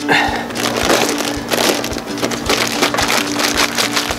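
Plastic zipper-lock bag with meat inside being pressed shut along its seal and handled: a continuous run of crinkling and small crackles.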